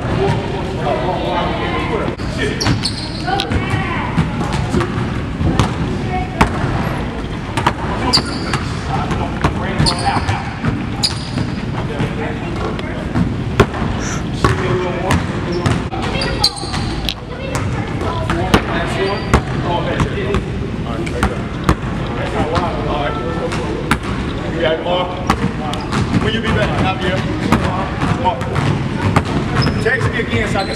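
Basketball dribbled hard and fast, over and over, on a hardwood gym floor, with frequent sharp bounces throughout.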